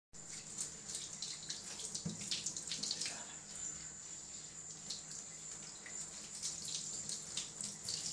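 Water from a handheld shower sprayer running over a cat's fur in a bathtub, a steady hiss with irregular spattering and splashing.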